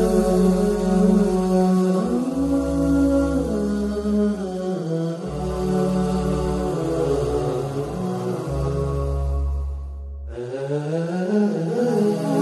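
Soundtrack music led by a chanted vocal line, with long held notes that slide between pitches over a low drone that drops in and out. The music dips briefly about ten seconds in, then resumes.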